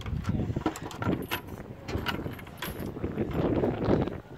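Old wooden plank outhouse door being unlatched and pulled open: a string of irregular knocks, clicks and rattles from the wooden latch bar and boards, over a low rumble.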